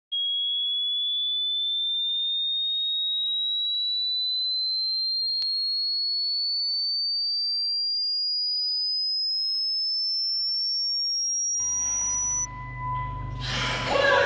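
A single pure electronic tone, rising slowly and evenly in pitch for about twelve seconds, with one faint click near the middle. Near the end the tone cuts off and a low rumble with rising noise comes in.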